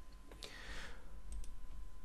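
Computer mouse and keyboard clicks: one sharp click about half a second in, followed by a short soft hiss, then two light ticks around a second and a half, over a faint steady electrical hum.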